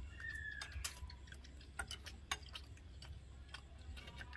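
Quiet eating of Korean instant noodles with chopsticks: scattered sharp clicks and smacks from chewing and chopsticks against the plates, a few a second, over a low hum.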